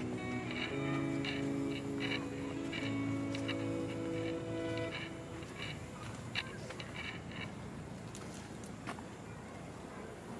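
Background music: held chords with a light, regular tick, fading out about halfway through. After that only faint outdoor noise remains, with a couple of soft clicks.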